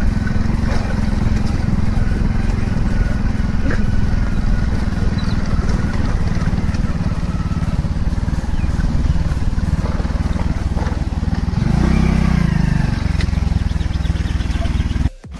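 Steady low rumble of a vehicle on the move, with wind and road noise on the microphone, swelling louder briefly near the end.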